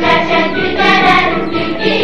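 An Azerbaijani children's song, sung with instrumental backing.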